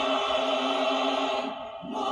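Singing: one long held note, broken briefly near the end before the next note begins.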